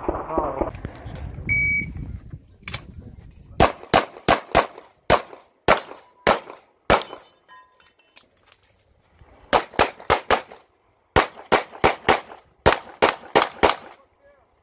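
A shot timer gives one short beep, and then a 9 mm production-division pistol fires rapid strings of shots at the targets, about three shots a second. There is a pause of about two and a half seconds midway before the second strings.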